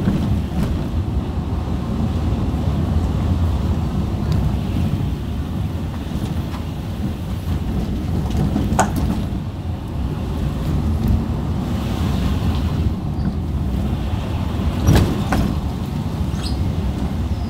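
Steady low engine and road rumble heard from inside a car driving slowly along a rough lane, with a couple of short knocks or rattles, one about halfway through and a louder one near the end.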